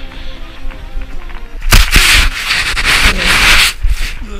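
Background music, then, about a second and a half in, a loud rushing scrape of a snowboard ploughing through deep powder snow, snow spraying over the microphone, lasting about two seconds before it stops abruptly.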